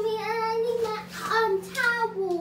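A young girl singing, holding drawn-out notes that slide up and down in pitch.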